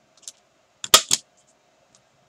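Hand-held single-hole punch snapping through layered paper: a few faint clicks, then a loud sharp snap about a second in, followed closely by a second click.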